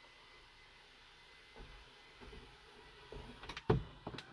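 Jeep Wrangler Sky One-Touch power top near the end of its close: a faint steady motor whine, then a series of clunks as the panel draws shut and seats, with one loud thud near the end as it stops.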